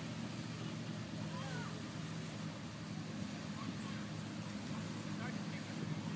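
Steady low engine hum over the lake, with a few faint, short gull calls at intervals.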